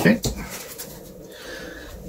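A deck of tarot cards being squared up in the hands and cards set down on a tabletop: a few soft taps and slides.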